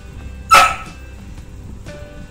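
A Labrador dog barking once, a single short, loud bark about half a second in.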